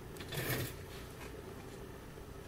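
Faint room tone with one brief soft rustle about half a second in.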